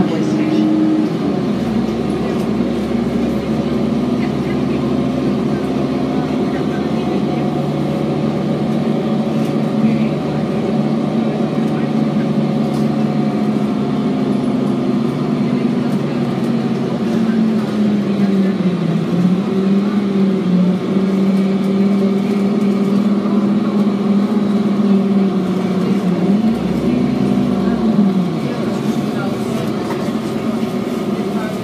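Diesel engine of a 2007 Orion VII transit bus running under way, heard from inside the passenger cabin. Its pitch holds fairly steady, sags about two-thirds of the way through, and rises and falls briefly near the end.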